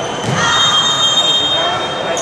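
A referee's whistle blown once, a steady shrill tone lasting a bit over a second, over the chatter of voices in the gym.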